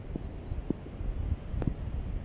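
Wind rumbling on the microphone outdoors, with a few faint clicks and short high bird chirps.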